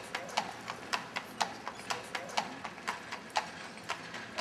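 A carriage horse's hooves clip-clopping at a walk on a paved street, about three hoofbeats a second.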